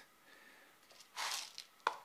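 A brief rustle and crunch of clay granules as fingers press them around the seedling's stem in the pot, followed by a single small click.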